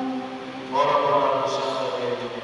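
A hymn being sung in long held notes, with a new, louder and higher phrase starting just under a second in.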